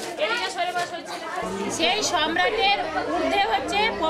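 Children reading aloud from their textbooks all at once: a babble of overlapping young voices. A low steady hum comes in about one and a half seconds in.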